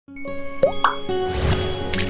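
Animated logo intro jingle: a sustained synth music bed with two quick upward 'plop' pops under a second in, then a rising whoosh that ends in a sharp hit near the end.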